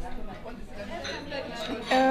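A person's voice, quiet and indistinct, softer than the talk around it.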